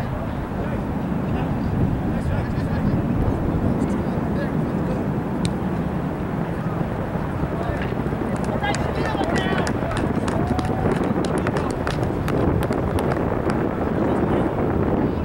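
Outdoor rugby-field ambience: wind rumbling on the microphone, with distant shouting from players and sideline spectators. A run of light clicks comes in the second half.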